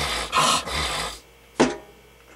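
A man breathing hard in a few quick, heavy breaths, then a short sharp click about a second and a half in.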